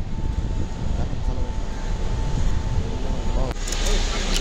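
Busy airport ambience: a low rumble with background voices and a steady faint hum. It cuts off abruptly about three and a half seconds in and gives way to noisier curbside sound with a few clicks.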